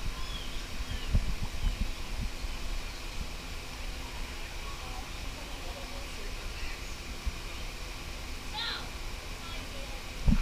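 Aviary ambience: faint bird chirps over a steady background hum and distant murmur, with a few low bumps near the start.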